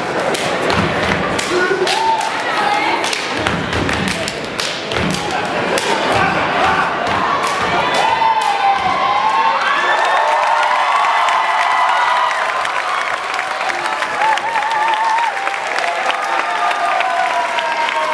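Step dancers stomping and clapping in quick rhythmic hits on a wooden stage floor. About halfway through the hits thin out, and voices shouting and whooping take over.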